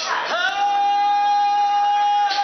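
A woman singing karaoke into a microphone over a backing track, sliding up into one long held high note.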